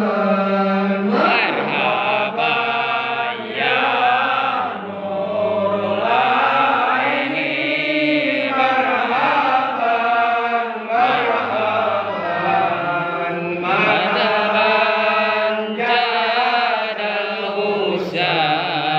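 Group of men and a boy chanting marhaban, Islamic devotional praise of the Prophet, in unison, one voice carried through a microphone. The chant is continuous and melodic, with long drawn-out, sliding notes.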